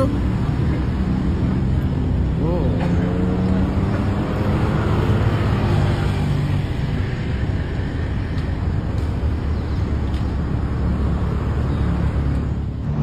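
Road traffic heard from inside a car: a steady engine hum with cars driving past, swelling in the middle and easing off again.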